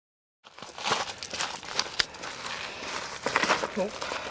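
Footsteps crunching and rustling through dry bracken and undergrowth on a slope, starting about half a second in, with irregular snaps and crackles.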